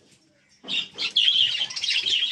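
A flock of budgerigars chattering with many rapid, overlapping chirps, starting about half a second in after a brief near-silent moment.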